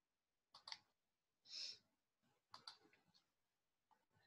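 Near silence broken by soft computer-mouse clicks: a quick double click about half a second in and another about two and a half seconds in, with a brief soft hiss between them.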